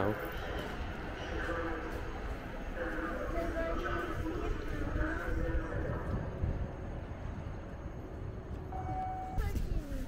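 Wind buffeting the microphone, a rumbling low noise that rises and falls, with faint voices in the background and a short steady tone near the end.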